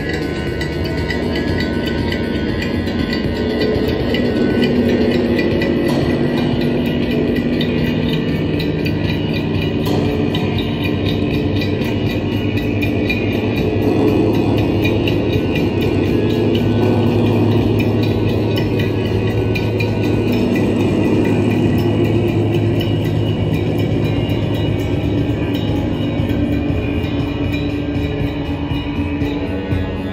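Live ambient-industrial drone music: a large hanging gong played with a mallet, its sustained wash layered with held electronic keyboard tones. The sound is a steady, dense drone of several held pitches with no separate strikes standing out, swelling slightly a few seconds in and again around the middle.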